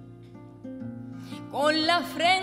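Live acoustic guitar playing quiet, sustained notes. About one and a half seconds in, a woman's singing voice enters with a bending, wavering line.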